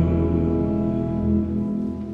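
Church organ holding sustained chords over a deep bass note, sounding the Amen that closes the chanted opening prayer. The chord shifts about a second in and the sound fades near the end.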